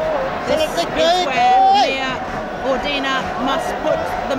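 Badminton arena crowd between rallies: several spectators shouting and calling out over a steady crowd hubbub, one call held briefly about a second and a half in.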